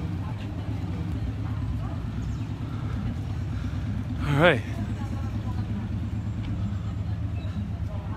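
Steady low rumble of city street ambience, likely traffic and outdoor background noise, with a man briefly saying "Right" about halfway through.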